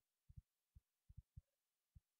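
Near silence broken by about eight faint, short low thumps at an uneven pace, some coming in quick pairs.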